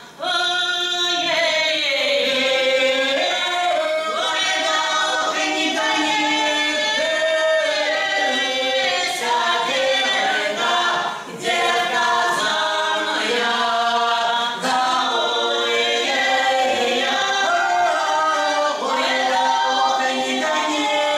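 A four-voice Russian folk ensemble, three women and a man, singing a folk song unaccompanied in close harmony, with a brief break between phrases about eleven seconds in.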